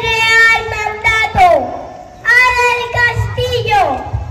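A child's high voice singing long held notes in two phrases, each ending in a downward slide in pitch, with a short break between them.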